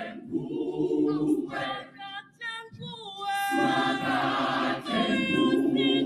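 A cappella gospel choir of women's voices singing, with a short drop about two seconds in before the full choir comes back in.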